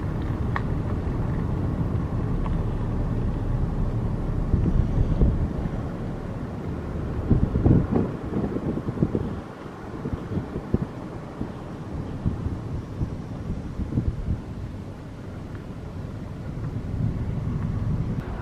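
A car rolling slowly along a dirt road: a steady low rumble of tyres and engine, with wind buffeting the microphone. It is louder for the first several seconds and quieter over the second half.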